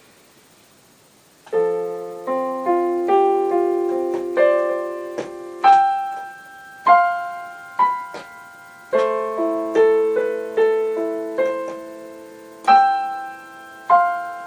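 Yamaha digital piano played with both hands: a slow passage of chords and single melody notes, each struck and left to fade. It starts about a second and a half in.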